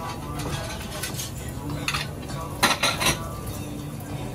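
Dishes and utensils clinking in a ramen shop's open kitchen: a few sharp clinks, with the loudest cluster about two and a half to three seconds in, over a steady low kitchen hum.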